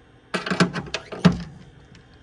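A quick run of clicks and knocks from hand tools being handled against a metal tool cart, as a ratcheting screwdriver is slotted back into its holder. It starts about a third of a second in and lasts about a second.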